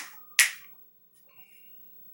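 Two sharp clicks about half a second apart, the second one the louder, each dying away quickly in the room.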